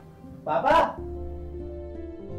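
A child's voice says "Dad" once, then background music of held, sustained notes with a low bass begins about a second in.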